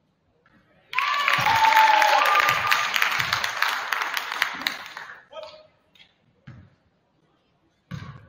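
Gym crowd and bench cheering, shouting and clapping, breaking out suddenly about a second in and fading away over the next few seconds. A basketball bounces on the hardwood floor a few times.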